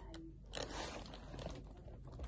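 Faint rustling and crinkling of crumpled brown kraft packing paper being pulled out of a cardboard shipping box, starting about half a second in.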